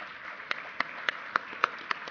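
Hand clapping: six sharp claps, about three and a half a second, over a softer wash of audience applause.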